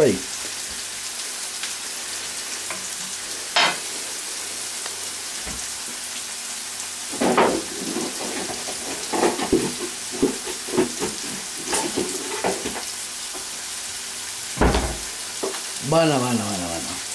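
Chopped onion, peppers and tomato sizzling steadily in a frying pan as a sofrito cooks over a gas flame. A few scattered knocks and clicks sound over the sizzle, the loudest a thump near the end.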